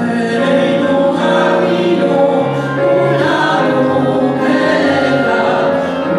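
Female vocal trio singing a Jewish song in harmony, with instrumental accompaniment, in sustained phrases.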